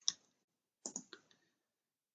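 Faint computer clicks while opening a screen-capture tool: one click right at the start, then three quick clicks about a second in.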